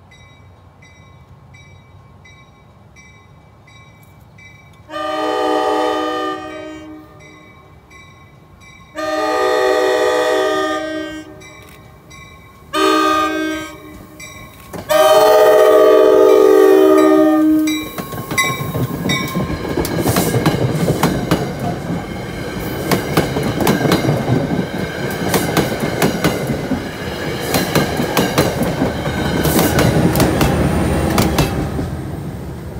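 Grade-crossing bell ringing at a steady beat, then a multi-note train horn blowing the crossing signal: two long blasts, a short one and a long one. An NJ Transit passenger train then rushes through the crossing, its wheels clattering over the rail joints.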